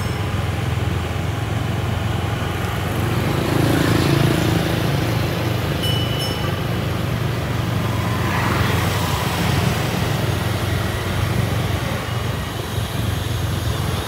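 Steady city street traffic noise, mostly motorbike engines and tyres passing, with a short high squeak about six seconds in.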